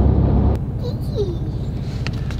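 Low, steady road and engine rumble heard inside the cab of a 2019 Ford F-150 on the move. About half a second in, it cuts abruptly to a quieter rumble.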